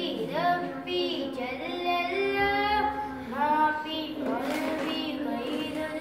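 A boy's voice chanting unaccompanied in a melodic, devotional style, holding long notes that bend and glide in pitch, with short pauses for breath between phrases.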